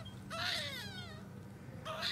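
Newborn baby crying: one short, falling wail about half a second in, and another beginning near the end.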